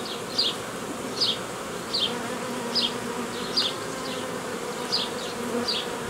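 Steady buzzing hum of a strong honeybee colony over an open hive. Over it, a short high chirp repeats a little more than once a second.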